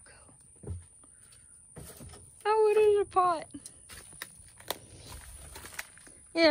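Footsteps over leaf litter and loose boards, with scattered knocks and clicks as someone walks through debris. About halfway through comes a short, loud two-part vocal sound, like an exclamation.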